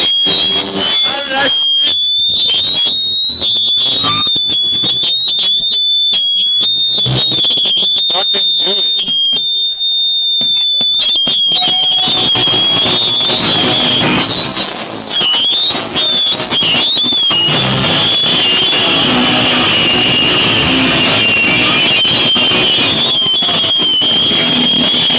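A high-pitched, wavering feedback squeal rings from the amplifiers over scattered noise. About halfway through, a live band of bass guitar and drums starts playing loud with shouted vocals, and the squeal carries on beneath.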